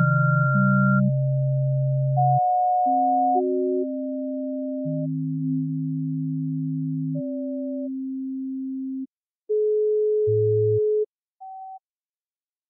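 Electronic music made of pure sine-wave tones: a few held notes sound at once at different pitches, each starting and stopping abruptly. It thins to single notes with brief gaps, ending on one short high tone near the end.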